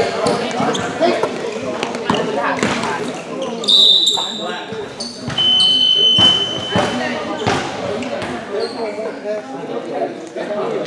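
Basketball game in a gym: the ball bouncing amid players' and spectators' voices, with two referee's whistle blasts, a short one about four seconds in and a longer one of over a second around six seconds, after which play stops.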